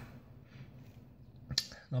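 A short pause in a man's speech: faint, near-quiet background, broken by one brief click about one and a half seconds in, just before he speaks again.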